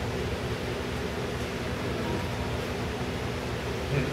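Steady background hiss with a faint low hum and no distinct events: the room noise of the training hall.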